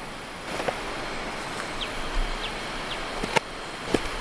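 Outdoor background hiss with a few short, high bird chirps in the middle, and two sharp clicks near the end, the second right at the close.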